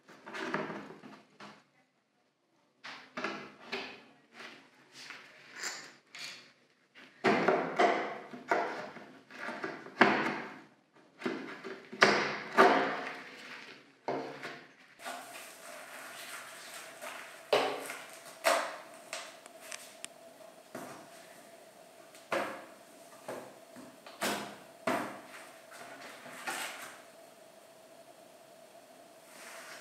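Small nails being pulled out of an old wooden seat frame with pincers and a claw hammer: irregular short scrapes, creaks and clicks of metal tool on wood and nail.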